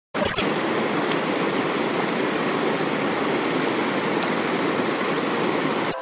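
Steady rushing of running water, like a stream, an even full-range rush that starts abruptly and cuts off suddenly at the end.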